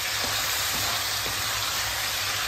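Chicken pieces, potato wedges and onion sizzling in a hot wok as a wooden spatula stirs them, with a steady frying hiss and a few light knocks and scrapes of the spatula.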